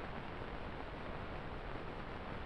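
Steady low hiss of an old film soundtrack, with no other sound.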